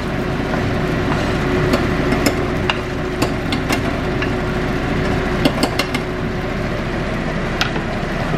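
Food sizzling in pans on a gas stove, with a wooden spoon stirring a small saucepan of melted garlic butter and giving scattered light clicks against the pot.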